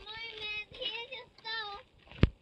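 A high voice singing three short wordless phrases, each note held briefly.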